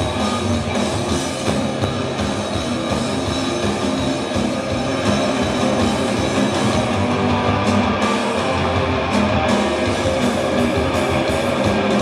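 Rock band playing live through a venue PA: electric guitars, bass and drum kit playing steadily.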